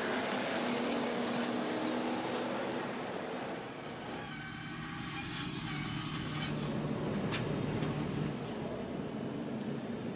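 Stock car race engines and track noise from a race broadcast: a steady engine drone with a rushing haze. It dips quieter about four seconds in, then builds back up.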